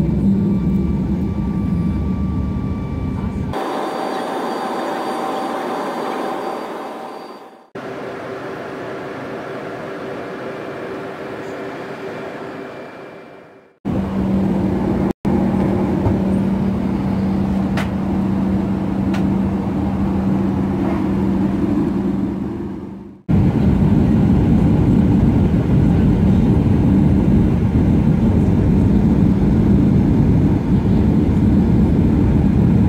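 Passenger jet cabin noise: a steady rumble of engines and rushing air with a low steady hum, heard from a window seat in the climb. It comes in several spliced stretches, changing abruptly in level and tone about 4, 8, 14 and 23 seconds in.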